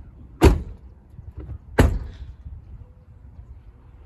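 Two doors of a Ford F-250 SuperCab slammed shut, one hard thud a little over a second after the other.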